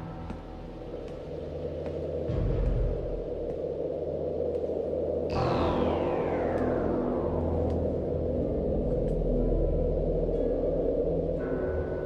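Synthesizer film score over a steady low rumble. About five seconds in, a sudden sweep starts high and slides down in pitch over a couple of seconds.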